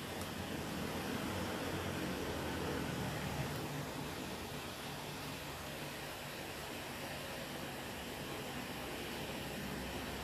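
Faint, steady background hiss with a low hum and no distinct events.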